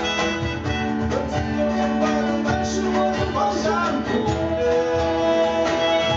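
A small band playing a slow song live, with acoustic guitar and keyboard carrying sustained chords and a gliding melody line over light percussion.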